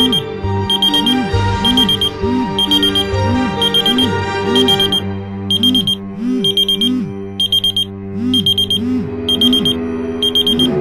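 Electronic alarm beeping in short high bursts about once a second, over sustained low musical tones.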